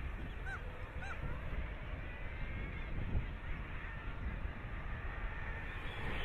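Faint seabird colony calls over a low, steady background noise: two short, hooked calls about half a second and one second in, then fainter calls.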